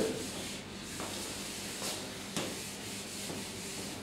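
Handheld whiteboard eraser rubbing across a whiteboard, a steady scrubbing as the board is wiped clean.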